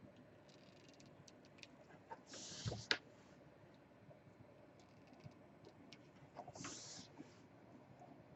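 Faint handling sounds of hot-gluing fabric trim: scattered small clicks and taps from the glue gun and fingers, with two brief hissing rustles, one about two and a half seconds in ending in a sharp click, the other near the end.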